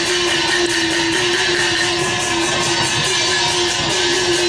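Traditional Chinese orchestra playing Chinese opera stage-combat accompaniment: one long held note with small pitch steps over a quick, steady beat.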